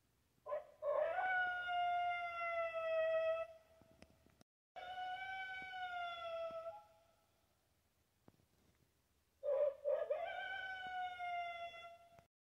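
Three long howls, each held steady and falling slightly in pitch. The first and last open with short yelps, and the middle one is quieter.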